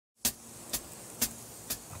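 Sharp ticks, four of them about half a second apart, over a quiet steady background with a faint hum, starting just after silence.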